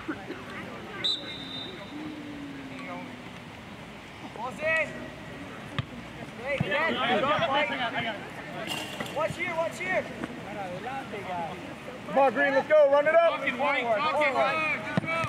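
Shouting voices of soccer players and sideline spectators calling during live play on an open field. The shouting is loudest and most crowded from about six and a half seconds in, and again near the end, with a few sharp knocks of the ball being kicked.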